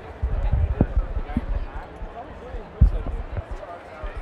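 Crowd chatter in a busy convention hall, with a run of low dull thumps, the loudest about three quarters of the way through.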